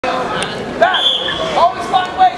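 Spectator chatter and shouting in a school gym during a wrestling bout, with a few short high squeaks and sharp clicks.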